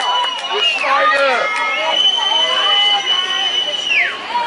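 A shrill whistle blown in two long blasts, each ending in a falling pitch, over a crowd of people shouting at once.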